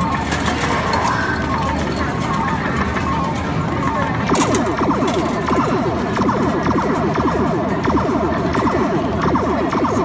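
Arcade din: music from game machines over background voices, steady throughout, with one sharp clack about four and a half seconds in.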